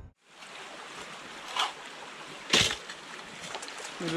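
Shallow creek water running steadily, with two brief louder splashes about one and a half and two and a half seconds in, the second the loudest.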